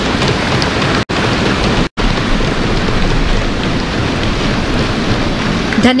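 Audience applauding steadily with sustained clapping. The sound cuts out briefly twice, about one and two seconds in.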